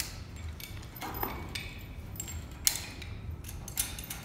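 Metal carabiners and rope access hardware clicking and clinking as they are handled, with a few sharp clicks, the loudest about two-thirds of the way through, over a low steady hum.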